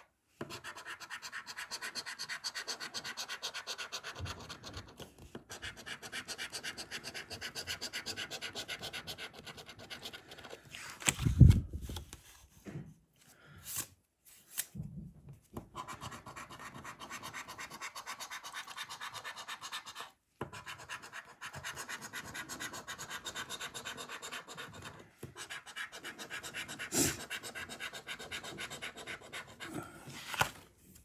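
A coin scratching the latex coating off a lottery scratchcard in quick, rapid strokes, in long runs broken by short pauses. A single loud thump comes about a third of the way in.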